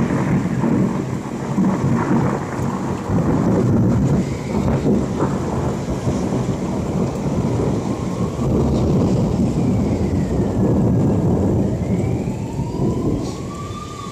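Thunder rumbling on and on, low and loud, with rain falling, the rumble dying away toward the end. In the second half a siren starts wailing, rising and falling in pitch.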